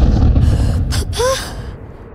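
A deep boom at the start that dies away over about a second and a half. About a second in, an animated bird character gives a short breathy gasp.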